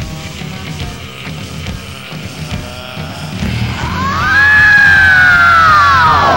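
Heavy metal band playing on a rough live rehearsal recording. Over the last half a long, high wailing note rises, holds and then slides down in pitch; it is the loudest part.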